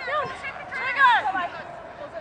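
Several short, high-pitched shouted calls from voices on a sports ground, rising and falling in pitch, with the loudest about a second in.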